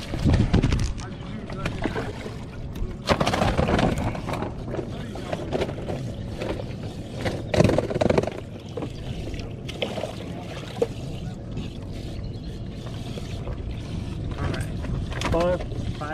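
Water splashing in a bass boat's livewells as fish are taken out by hand for the weigh bag, in a few louder bursts over a steady low rumble.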